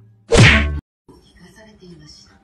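A single loud whack about a third of a second in, lasting about half a second and cutting off abruptly. Faint room sound follows.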